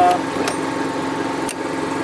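Steady mechanical drone of the toy hauler's running generator, with two sharp clicks from the RV entry door's latch about half a second and a second and a half in.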